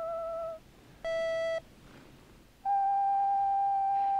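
A small creature's crooning voice singing pure, theremin-like held notes from a film soundtrack. One note ends about half a second in. A short, brighter keyboard note sounds about a second in. From about two and a half seconds the voice answers with a slightly higher held note.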